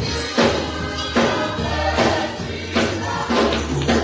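Gospel choir singing with hand-clapping and percussion on a steady beat, a little faster than one strong beat a second, over a sustained bass.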